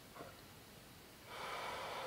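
A man's audible breath out, a soft hiss lasting about a second that starts past the middle.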